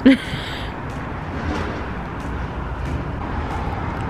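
Steady outdoor city street ambience with a constant traffic hum. A brief, louder sound comes right at the very start.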